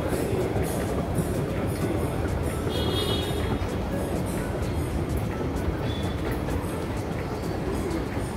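Central–Mid-Levels outdoor escalator running under its riders: a steady low rumble of the moving steps and drive, with irregular light clicks and rattles.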